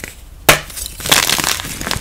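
A fresh block of gym chalk snapped between the hands with one sharp crack about half a second in, then crunching and crumbling as the pieces are squeezed.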